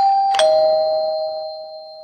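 Two-note ding-dong chime, a doorbell-style sound effect. A higher note is struck, then a lower one about half a second later, and both ring on and fade away slowly.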